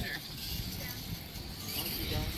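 Faint outdoor background: distant voices over a low, even rumble and a light high hiss.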